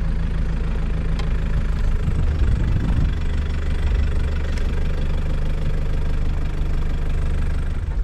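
Toyota Land Cruiser 4x4's engine running as it drives slowly along a dirt track. The engine note shifts about two to three seconds in, then runs steady.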